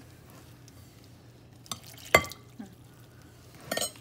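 A metal spoon stirring thick flour batter in a glass bowl. A little past halfway the spoon strikes the glass once in a sharp, ringing clink, which is the loudest sound. A short clatter of spoon against bowl follows near the end.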